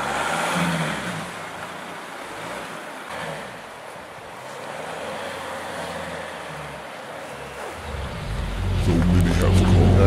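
A car driving past on a snow-covered road, its engine and tyre noise a steady hiss and hum. Near the end a deep low rumble builds and grows louder.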